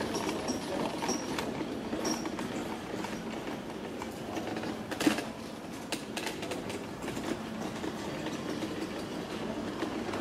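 Wheelchair rolling over cobblestone paving, its wheels and frame rattling and clattering without a break. A sharper knock comes about halfway through.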